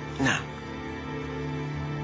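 Soft background music of held, sustained notes under a dialogue scene, with one short spoken word near the start.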